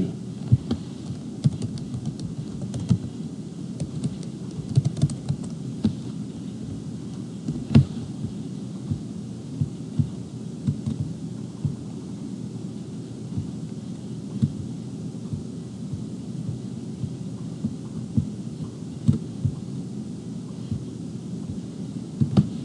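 Typing on a computer keyboard and clicking a mouse, heard as irregular soft knocks over a steady low hum, with one louder knock about eight seconds in.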